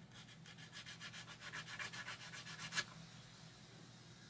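Quick back-and-forth sanding of a plastic model kit part with a wooden sanding stick, about nine strokes a second, stopping about three seconds in after one louder stroke.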